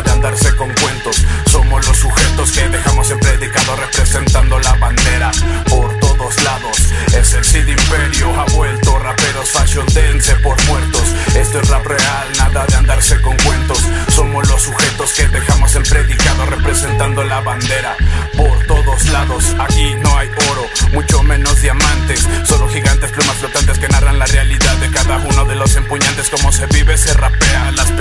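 Spanish-language hip hop track: rapping over a beat with heavy, repeating bass and crisp drums.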